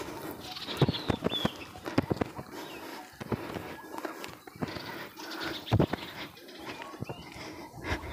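Footsteps crunching on a dry, leaf-strewn dirt footpath at walking pace, about two steps a second, with dry leaves and twigs rustling underfoot.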